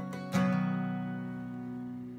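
Acoustic guitar strummed once about a third of a second in, the chord left ringing and slowly fading.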